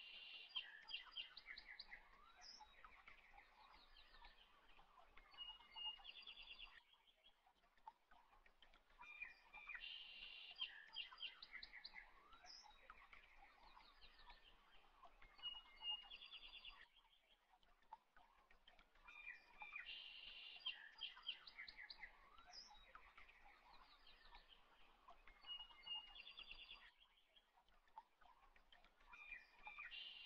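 Faint bird chirps and trills. The same stretch of about seven seconds repeats roughly every ten seconds, with a short lull between.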